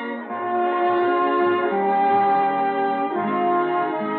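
Studio orchestra playing slow, held chords that change about every second and a half, on a narrow-band 1938 radio recording.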